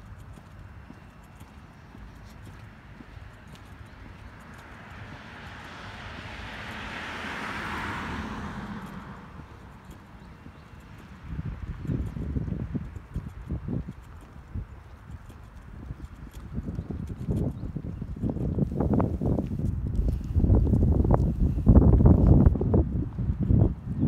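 Handheld phone microphone picking up the walker's own movement: faint at first, with a soft rushing that swells and fades. About eleven seconds in, irregular low thumps start, about two a second, from footsteps and handling of the phone, and grow louder near the end.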